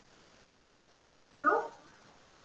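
Near silence, then about one and a half seconds in a single short, loud vocal sound lasting about a quarter of a second.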